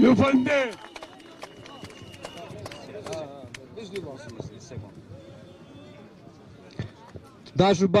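A man's loud speech into a microphone breaks off within the first second. Then comes a low murmur of scattered voices in a crowd, with a few short knocks. Near the end another man starts speaking loudly into a microphone.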